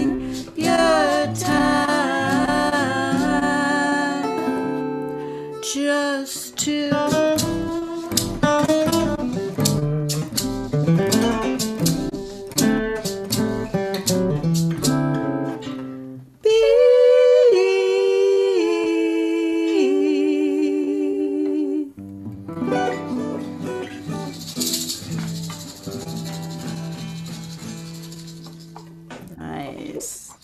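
A woman singing a folk song to two acoustic guitars. About halfway through, the guitars drop out under a long held sung note, then come back with a brief shaker rattle, and the song ends near the end.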